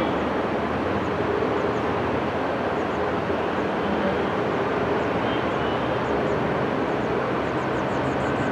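Steady outdoor background noise, an even hiss and rumble with no distinct events, and a few faint high chirps near the end.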